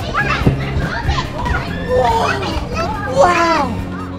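Young children's excited, high-pitched voices and calls at play, one falling near the end, over steady background music.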